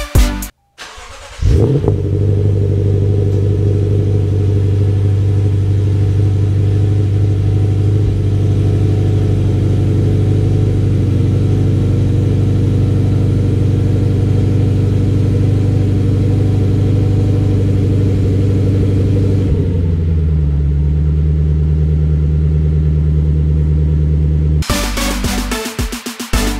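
Lexus GS F's 5.0-litre V8 starting: it catches with a short rising rev about a second and a half in, then holds a steady fast idle through its cat-back exhaust, which drops to a lower, deeper idle about twenty seconds in as the cold engine settles. Music plays briefly at the start and again near the end.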